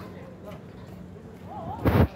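A brief loud thump on the handheld phone's microphone near the end, as the phone is moved, over faint background voices.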